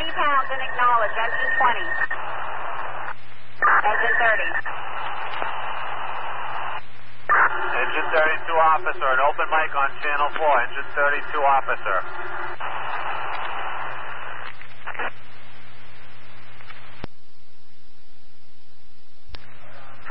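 Fire department two-way radio traffic from a scanner feed: muffled, hissy voice transmissions cut short by brief squelch gaps, over a steady low hum. Near the end the channel drops to plain static for about two seconds.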